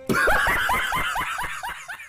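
A man laughing: a quick run of about ten short laughs, each rising in pitch, fading out near the end.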